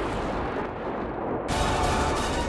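Dramatic background score with a rumbling, noisy sound effect. The top end fades away, then a sudden loud hit comes about one and a half seconds in, and the music swells back in.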